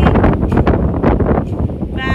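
Strong wind buffeting a phone's microphone: a loud, gusting rumble.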